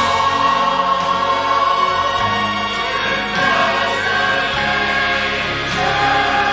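Choir singing with instrumental accompaniment, in long held notes.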